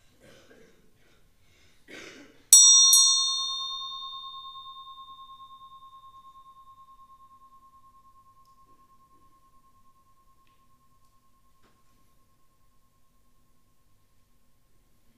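A meditation bell struck about two and a half seconds in, with a second light touch just after, its clear ringing tone dying away slowly with a gentle pulsing waver over about ten seconds.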